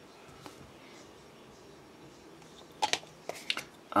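Low room tone, then a handful of short, sharp clicks about three seconds in as hard resin and plastic model-kit parts are picked up and knocked against each other.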